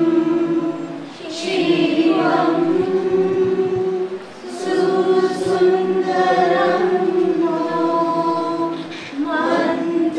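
A group of voices singing the university song together in long held notes, in phrases with short breaks for breath about a second, four seconds and nine seconds in.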